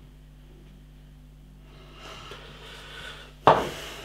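Pale ale being poured from a glass bottle into a glass, the pour growing louder over the last two seconds. About three and a half seconds in comes a single sharp knock, the loudest sound here.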